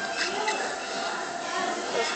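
A child's voice speaking quietly and indistinctly over a steady hiss, re-recorded from a tablet's speaker.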